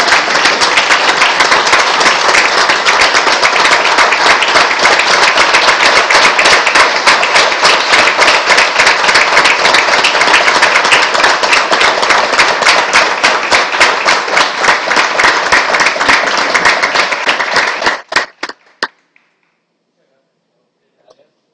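A roomful of people applauding, dense and loud, thinning to a few last claps and stopping about eighteen seconds in.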